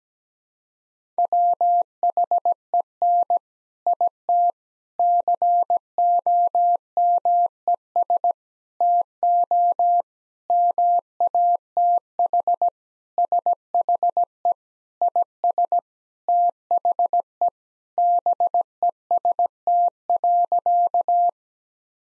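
Morse code practice tone sent at 17 words per minute: one steady pitch keyed on and off in short and long elements, spelling out the sentence "When it comes to math she is the best." It starts about a second in and stops just before the end.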